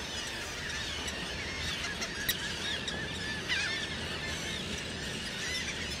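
A seabird colony calling: many short, high calls rising and falling in pitch and overlapping, over a steady wash of surf on rocks.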